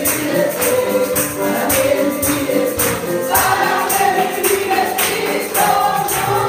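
Congregation singing a Spanish worship song together, with a steady percussion beat of about two hits a second; the singing grows stronger about halfway through.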